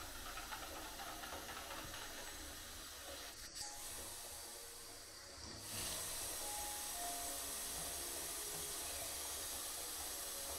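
Faint, steady hiss of water in a foamy bath, with a few small splashes early on. About six seconds in, it grows louder and brighter.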